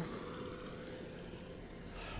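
A car and a log truck driving on along the road: a steady low engine and road rumble, with a faint steady hum that stops near the end.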